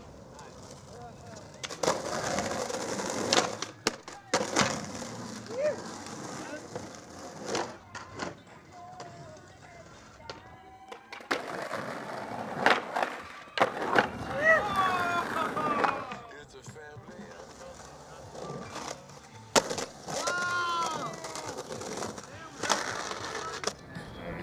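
Skateboard wheels rolling on rough concrete, broken several times by the sharp cracks of the board popping and landing.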